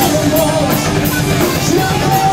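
Heavy metal band playing live: electric guitars, bass guitar and drum kit, with vocals sung into microphones over it.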